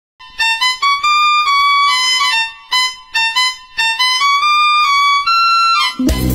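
Music: a high lead melody of held notes stepping up and down, with short gaps between phrases and no beat underneath.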